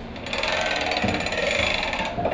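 Fast mechanical ratcheting clatter of a water-sampling line being hauled by hand through its pulley rig. It starts about a third of a second in and runs on evenly.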